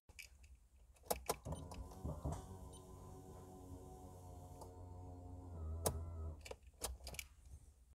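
Car's electrics switched on and then off: several sharp clicks, and a faint steady electric hum that starts about a second and a half in and stops about five seconds later.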